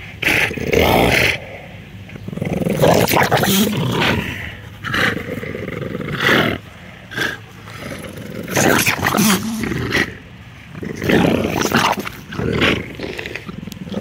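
Two bulldogs growling in play as they tug-of-war over a toy, the growls coming in repeated bursts of about a second each with short pauses between.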